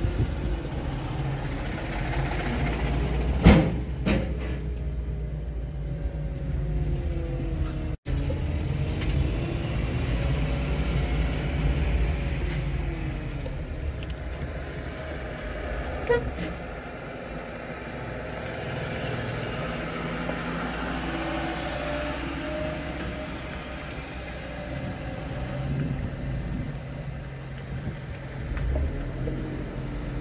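Car engine and road noise from inside a moving car on a rough, unfinished road, the engine note rising and falling as it drives and turns. There are two sharp knocks about three and a half seconds in, and a brief break in the sound at about eight seconds.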